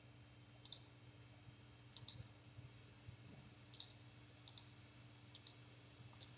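Computer mouse clicking: five faint, short clicks spaced unevenly, about a second apart, over a faint steady low hum.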